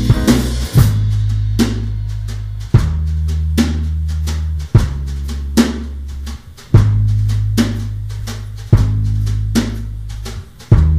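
Instrumental stretch of a rock song, with no vocals: a drum kit plays a steady beat with bass drum, snare and cymbals. Low held bass notes change about every two seconds, each change landing on a heavy accented hit.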